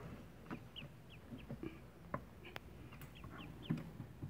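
Newly hatched ducklings peeping in an incubator: short, high peeps that drop in pitch, a few every second. A few sharp clicks and knocks come with them, the loudest near the end.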